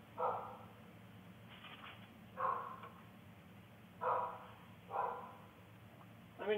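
A dog barking four times, short single barks a second or two apart, heard faintly through a doorbell camera's microphone.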